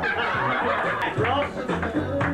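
Several people laughing and chuckling, with some voices, over music playing.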